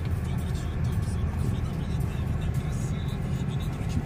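Inside a car's cabin, a steady low rumble of the engine and of the tyres rolling slowly over a cobbled street.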